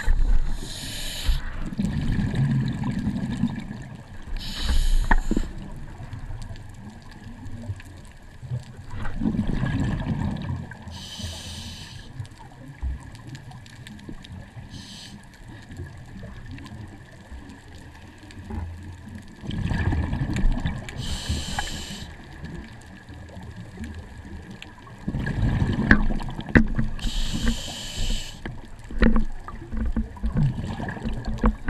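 Scuba diver breathing through a regulator underwater: about five slow breath cycles several seconds apart, each a low rush of exhaled bubbles with a short high hiss.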